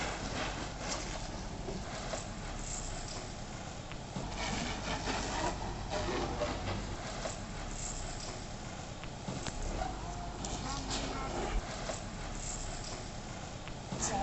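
Indistinct voices of people talking at a distance, over a steady noisy outdoor background.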